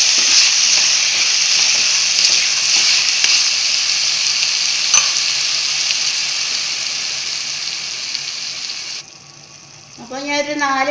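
Chopped vegetables sizzling as they fry in a pan and are stirred with a spatula: a steady sizzle that slowly weakens, with a single sharp click about halfway, then cuts off suddenly about nine seconds in.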